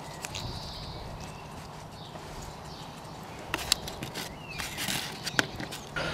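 Light clicks and taps from hands fitting a silicone plug and rubber washers onto the threaded steel bar of a bait pump plunger, most of them bunched in the second half, over low, steady background noise.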